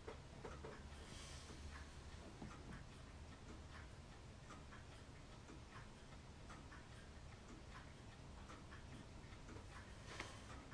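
Near silence: a low room hum with faint, light ticks scattered through it.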